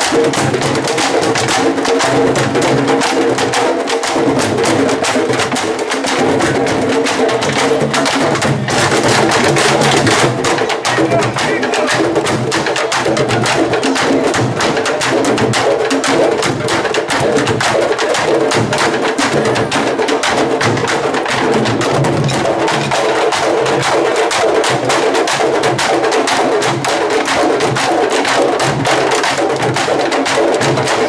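A candombe drum troupe playing together: many barrel-shaped chico, repique and piano drums, each beaten with one bare hand and one stick, with sticks clacking on the wooden drum shells. The dense rhythm runs on steadily without a break.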